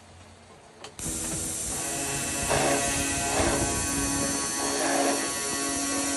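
Metal-cutting circular saw starting up suddenly about a second in and running with a steady whine of several tones, swelling louder a few times as its blade comes down onto a clamped steel pipe.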